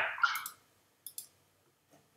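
Two quick, sharp mouse clicks close together about a second in, with a very faint tick near the end. A short breathy mouth noise comes right at the start.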